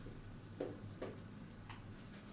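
Two short knocks about half a second apart, then a lighter click near the end, over a low steady hum.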